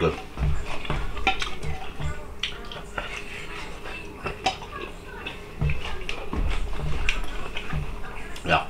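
A metal fork clicking and scraping on a plate as cooked chicken drumsticks are picked at, with a few low thuds mixed in.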